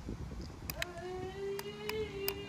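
A few sharp clicks, as of the toy speedboat's remote control being worked, and from about a second in a steady whine that rises slightly in pitch. The water-soaked boat doesn't seem to run.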